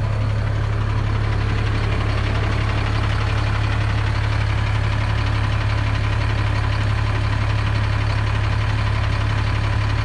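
Motorhome engine idling steadily, a constant low hum with no change in speed.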